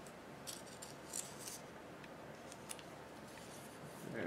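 A few faint, short, dry scratches of a glue brush and paper seal strip being worked against a glass jar, in clusters about half a second in and around a second in, with a single one near three seconds.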